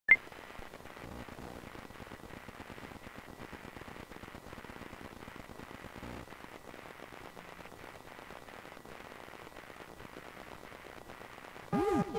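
Steady static-like hiss with faint scattered knocks, opening with a sharp click. Near the end a hollow-body electric guitar starts playing, its notes bending and wavering in pitch.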